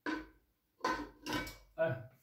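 Metal parts of an electric water pump knocking and clinking as its housing is handled and fitted onto the motor, a sharp knock at the start and two more knocks about a second in.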